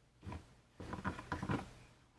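Luger P08 pistol being pushed down into its leather holster: a few short, faint scuffs and rubs of leather against the gun and hands.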